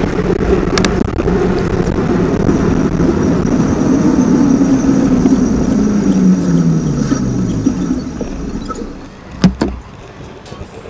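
Wind rush and fat-tire road noise on a moving e-bike's action camera, with a whine that falls in pitch as the bike slows. Near the end it goes quieter as the bike stops, with two short knocks.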